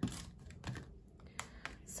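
Soft clicks and light taps of paper cardstock pieces being handled and set down on a card on a tabletop, a handful of separate ticks.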